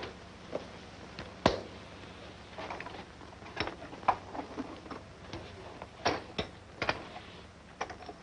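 Light, irregular clicks and taps of radio tubes and set parts being handled and tried, about a dozen small knocks, the sharpest about a second and a half in and another about six seconds in.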